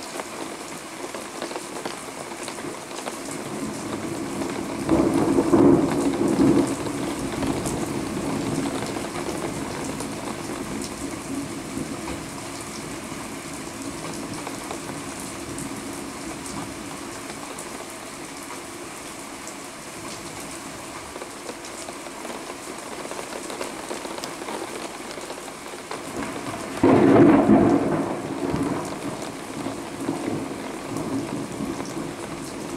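Thunderstorm: steady heavy rain falling throughout, with two thunderclaps, one about five seconds in and another near the end, each rumbling for a second or two.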